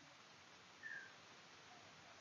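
Near silence: faint room tone in a pause between speech, with one very faint, brief high blip about a second in.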